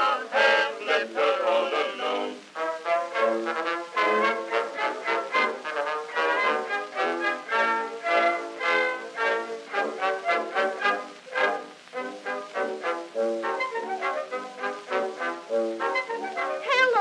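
Orchestral interlude of an acoustic-era Edison Amberol wax cylinder recording, the studio orchestra playing on between sung verses. The sound is thin, with no deep bass.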